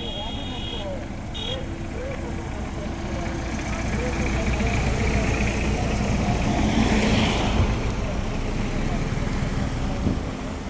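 Cars on a road with their engines running, and one vehicle passing close, loudest about seven seconds in.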